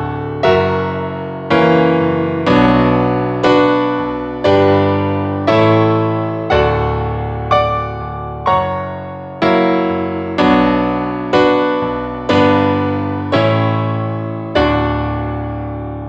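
Piano playing a chord progression, a full chord struck about once a second and left to ring out. The chords are played in wide voicings built on chord inversions.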